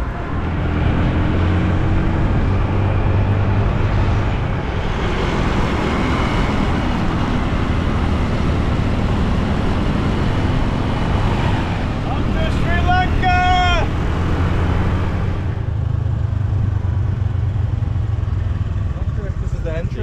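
Motor scooter engine running steadily as it is ridden along a road. Wind and road rush build up about four seconds in and ease off about fifteen seconds in.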